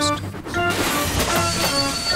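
Cartoon sound effect of a train engine breaking down: a sudden clattering crash about two-thirds of a second in that trails on as a noisy rush, over background music.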